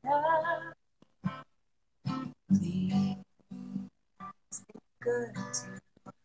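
A woman singing a slow folk song to her own acoustic guitar, heard over a video call. The sound drops out to silence for short moments several times.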